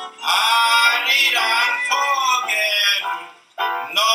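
Music with a singing voice whose pitch glides up and down, broken by a short gap about three and a half seconds in.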